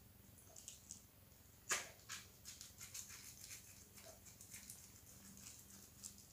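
Faint handling sounds of fingers working a small rubber balloon: a string of small clicks and rubs, with one sharper click a little under two seconds in.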